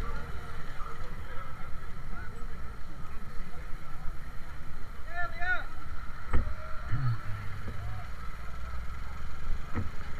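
Small single-cylinder Shineray motorcycle running at low speed, heard from an on-bike camera with wind rumble on the microphone. The rider says the worn chain set is binding badly and making the bike run choked. A brief voice comes about five seconds in, and a single knock just after six seconds.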